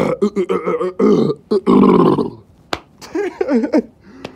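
A man imitating weird noises with his voice: a string of short, rough, throaty vocal sounds, the longest in the middle, with a sharp click about three-quarters of the way through.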